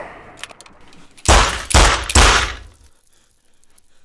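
Three loud, heavy bangs in quick succession, about half a second apart, a little over a second in.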